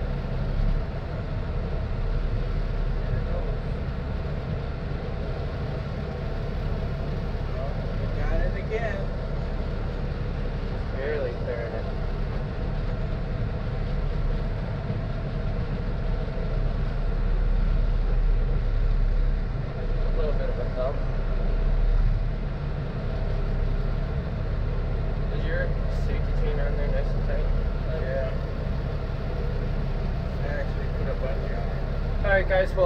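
Diesel engine of a heavy rotator tow truck running steadily under load while pulling a coach bus, heard from inside the cab as an even low drone.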